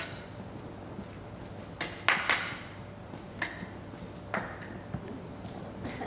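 A few scattered short taps and knocks, about six in all, the loudest about two seconds in, ringing briefly in a large hall.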